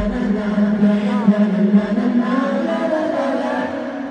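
A large concert crowd chanting together in unison. The backing music's bass drops out at the very start.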